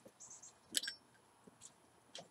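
Quiet puffing on a tobacco pipe being lit over the flame of a Zippo pipe lighter: a few faint soft pops, then a single sharper click just under a second in.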